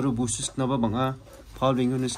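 A man speaking, with a brief pause a little past the middle.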